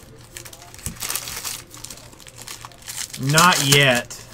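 Foil trading-card pack wrappers being crumpled by hand, crinkling in the first half. Near the end comes a brief, louder vocal sound from a man, without words.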